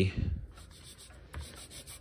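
Silver chloride crystals and water being rubbed into an engraved brass clock dial with a fingertip and cotton pad: a faint scratchy rubbing.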